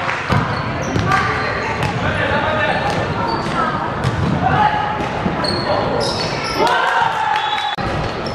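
A basketball dribbled on a hardwood court during play, with short high squeaks of shoes and players' voices calling out, all echoing in a large sports hall.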